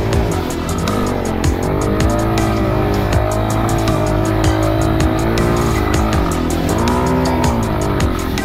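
Dirt bike engine revving up and down under load on a steep dirt climb, its pitch rising and falling repeatedly, over background music with a steady beat.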